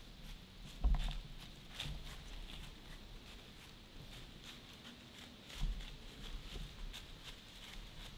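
Whitetail buck walking through dry fallen leaves: scattered crunching steps, with two louder low thumps, about a second in and again just past five seconds.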